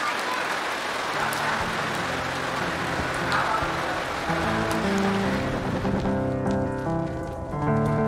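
Steady rain falling, an even hiss, with soft background music coming in underneath. About three-quarters of the way in the rain fades out and the music carries on alone.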